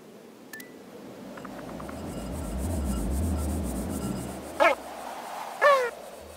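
Cartoon sound effects for an animated llama character: a low rubbing rumble that swells and fades over a few seconds, then two short squeaky chirps about a second apart, the second near the end.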